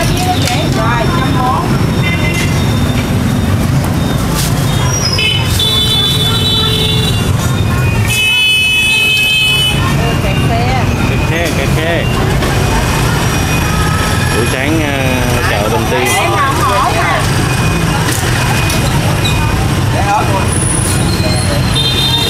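Busy street traffic with motorbike engines running close by and people talking. A horn beeps briefly about six seconds in, then sounds again for about two seconds from eight seconds in.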